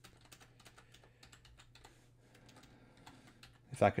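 Faint computer keyboard typing: a quick, irregular run of light keystrokes.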